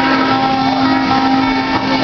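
Live acoustic guitar music from two guitars, chords ringing on in steady held notes with no singing.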